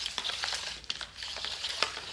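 An orange mains hook-up cable being wound by hand onto a lightweight plastic storage reel: a steady rustle as the cable drags onto the drum, with a few irregular sharp plastic clicks.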